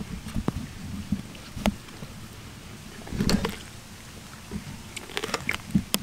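A lion chewing on a whole raw turkey, with irregular crunches and crackles as it bites into the bird, a louder low swell of sound about halfway through, and a quick run of crunches near the end.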